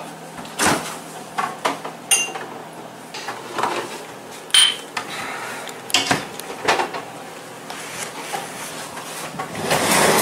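Kitchen cupboard doors and glassware being handled: a scattered series of separate knocks and clinks, one near the middle with a short glassy ring.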